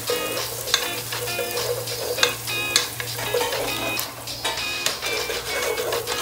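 Chopped garlic and onion sizzling in oil in a pot, with a wooden spatula stirring and scraping against the pot now and then. Background music plays underneath.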